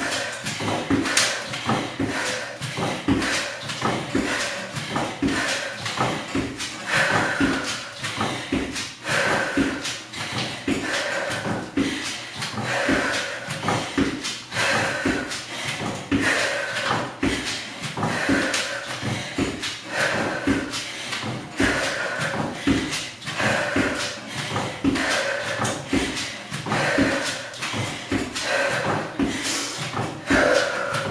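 A woman breathing out in a steady rhythm, about one breath a second, with the knocks of her feet stepping up onto a plyo box and back down to the floor during step-up knee drives.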